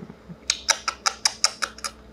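A quick run of about a dozen sharp, light clicks or taps, some eight a second, starting about half a second in.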